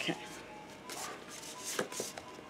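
Handling noise from a small pink cardboard product package being picked up and turned in the hands: soft rustles and light taps, with one sharper tap near the end.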